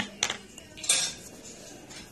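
Dishware being handled: a light knock about a quarter second in and a short scrape about a second in, from a plastic mixing bowl being moved on a table.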